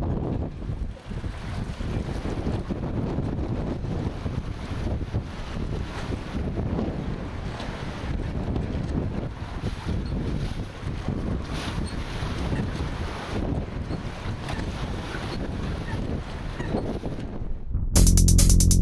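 Steady wind buffeting the microphone, with choppy river water lapping.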